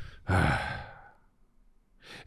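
A man's sigh, breathed close into a handheld microphone. It starts about a third of a second in and fades away over about a second.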